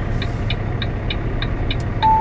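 Inside a semi-truck cab: the diesel engine's steady low hum, with a turn signal ticking evenly about three times a second.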